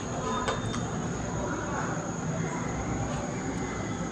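Steady kitchen background noise, an even hiss and rumble with a faint high whine running through it, and a few light handling knocks.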